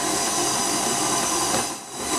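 KitchenAid Artisan stand mixer running steadily, its motor whirring as the flat beater mixes bread dough in a steel bowl. The sound dips briefly near the end.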